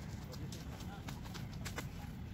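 A quick, irregular run of sharp clicks or taps, several a second, with children's voices faint in the background.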